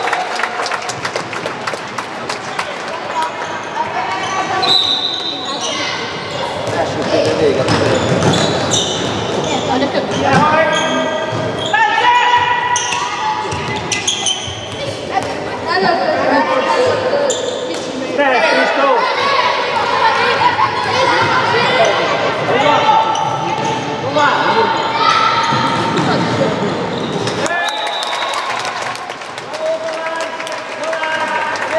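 A handball bouncing and slapping on a wooden sports-hall floor, mixed with voices calling out on court, all echoing in the large hall.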